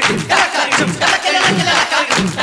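Kannada film song: a group of voices chants in rhythm over a fast, even drum beat.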